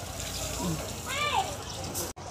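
Beach ambience: a steady wash of surf and wind, with faint voices of other people on the beach, two short calls rising and falling about half a second and a second in.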